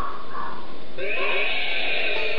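A cartoon sound effect: a short, animal-like cry with arching, wavering pitch starting about a second in, over a steady hiss.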